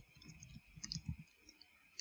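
Faint computer keyboard keystrokes: a scattering of quiet clicks as a line of code is typed, bunched together around the middle.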